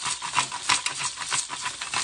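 Butter melted in an enamelled cast-iron dutch oven sizzling, with dense crackling pops, while a pepper mill grinds pepper into it.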